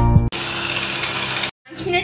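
Electric hand beater running steadily, its beaters whisking a thin mayonnaise mixture in a ceramic bowl, for about a second before it cuts off suddenly. A short tail of background music comes just before it, and a woman's voice starts near the end.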